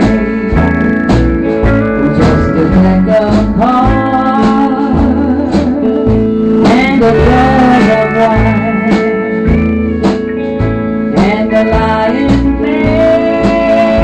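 Country band playing an instrumental break: a pedal steel guitar plays lead in sliding, gliding notes over guitar, bass and a steady drum beat.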